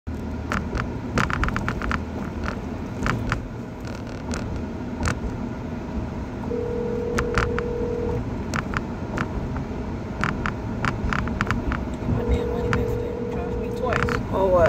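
Car cabin noise while riding: a steady low road-and-engine rumble with scattered sharp clicks. A steady tone is held for a couple of seconds twice, once in the middle and once near the end.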